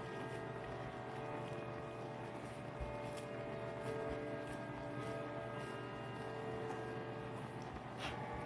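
Soft, faint pressing and rubbing as fingertips spread a crumbly crust mixture across a metal pizza pan, over a steady low hum.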